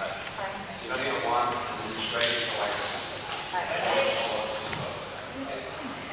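Indistinct speech echoing in a large sports hall, quieter than the instructor's talk around it.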